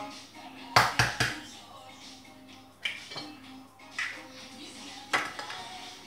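An egg is tapped against a hard rim to crack its shell: three sharp knocks in quick succession about a second in. Single clinks of shell and crockery follow every second or so.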